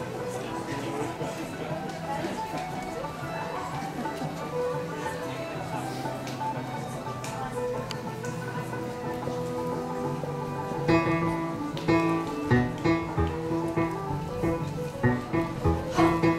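Live music from a stage, quiet and mixed with a low murmur of voices at first, then growing louder from about eleven seconds in with chords pulsing about twice a second.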